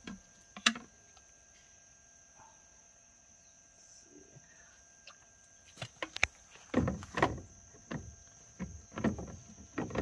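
Plastic water-filter housing being handled and fitted back onto its filter head. A sharp click comes under a second in, then from about six seconds a run of irregular knocks and scrapes of plastic on plastic as the bowl is lifted and twisted into place.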